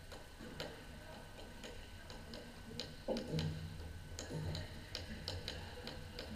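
Irregular sharp clicks and taps, about two a second, echoing around a large sports hall, with a louder knock just past halfway.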